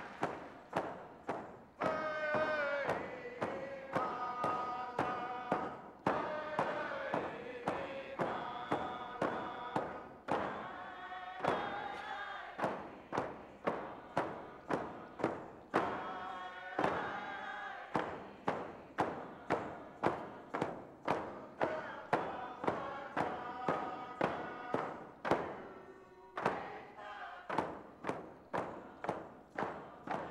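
Northwest Coast hide hand drums beaten in a steady beat, about two strokes a second, with a group of voices singing a chant over them.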